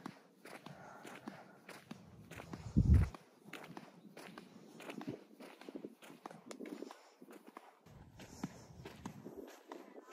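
Footsteps of flip-flops on asphalt at a walking pace, with the light slap and scuff of the rubber soles. A brief loud low rumble comes about three seconds in.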